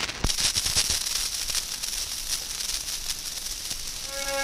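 Stylus lowered onto a spinning 1912 Columbia 78 rpm shellac disc: a few low knocks as it settles in the first second, then steady hiss and crackle of surface noise from the lead-in groove before the music starts.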